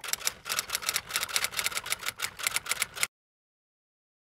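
A rapid run of typing key clicks, about nine a second, stopping abruptly about three seconds in.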